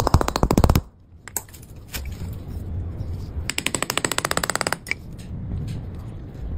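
Small hammer tapping rapidly on a cast metal pan, with a fast run of light metallic strikes in the first second and another about three and a half seconds in.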